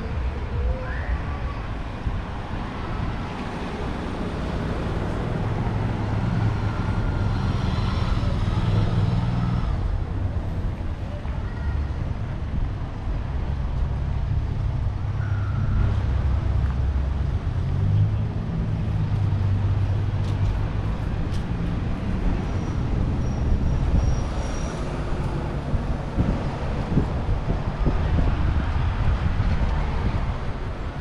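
Road traffic passing: a steady low engine hum from cars and motorbikes that swells as vehicles go by.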